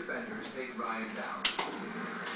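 A young child's quiet babbling and vocal sounds, with one sharp click about one and a half seconds in.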